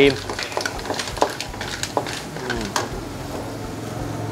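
Wooden spatula stirring spotted babylon snails around a steel wok, the shells knocking and scraping against the metal in a few separate clacks, over a low steady hum.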